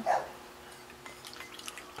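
Water poured in a thin stream from a plastic bottle into a glass holding cornstarch: faint, with a few light splashes.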